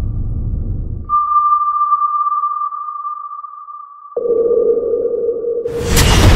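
A long, steady, high sonar-like tone over a deep underwater rumble that drops away about a second in. About four seconds in, a lower tone cuts in suddenly with a rumble, and near the end a loud blast breaks in: the explosion aboard the submarine.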